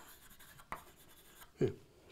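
Chalk writing on a blackboard: faint scratching with two sharp taps of the chalk, one at the start and one under a second later.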